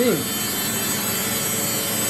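Samsung front-loading washing machine spinning its drum at high speed, about 1200 RPM, with a steady, even whir and no knocking or rattling. The machine has been levelled on its adjustable feet, so it runs without wobbling or vibrating.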